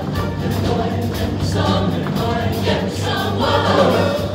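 A large mixed show choir singing in full voice over its live backing band. There is a steady bass line and regular cymbal strokes, and the music does not pause.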